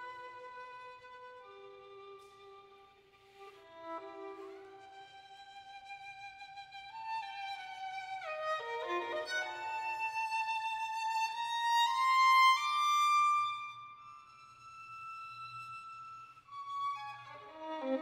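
Solo violin played with the bow in a slow passage of long held notes, starting softly and swelling to its loudest about two-thirds through, with a quick falling run of notes near the middle. It drops back to a soft held high note and ends with a short, quick flurry of notes.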